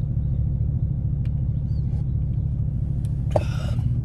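Steady low rumble of a pickup truck heard from inside its cab, with a short breath-like hiss near the end.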